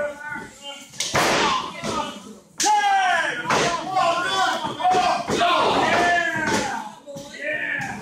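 Two loud impacts on a wrestling ring, about a second in and again a second and a half later, like bodies slamming onto the mat, followed by people shouting and yelling.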